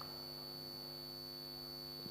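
A low, steady electrical hum with evenly spaced overtones, together with a faint, steady, high-pitched whine.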